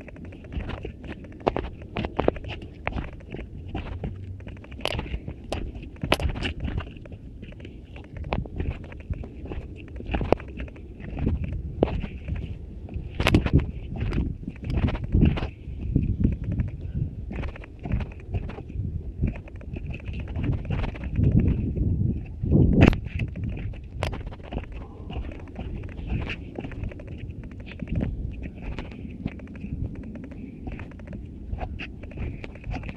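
Irregular footfalls of people jogging down steep steps of old railway ties, with knocks and rubbing from a hand-held camera. The sound is muffled because a finger is partly covering the microphone. The sharpest knocks come about halfway through and again a little later.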